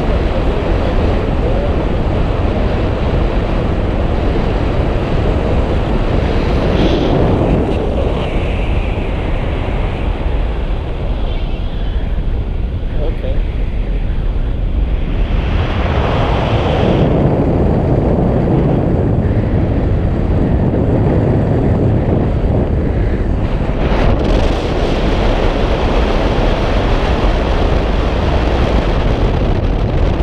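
Loud, steady rush of airflow over an action camera's microphone held out on a selfie stick in tandem paraglider flight. It swells and eases a few times as the glider turns.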